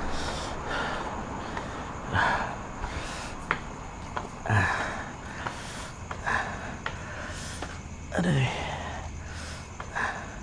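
A person breathing heavily, with a noisy breath every second or two and a short voiced breath falling in pitch near the end. A few sharp clicks and a low steady hum lie underneath.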